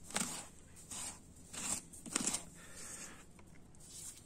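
A bare hand pushing and scooping fresh snow on a window ledge: a handful of short, soft crunching scrapes.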